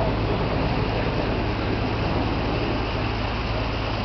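Steady drone of a passenger ferry's engine under way, a constant low hum under an even rushing hiss of water and air.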